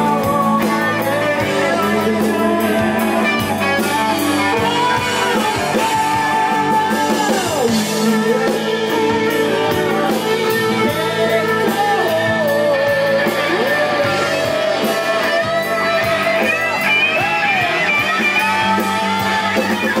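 Live rock band playing: an electric guitar lead with many bent notes over drums with cymbals, bass and keyboard.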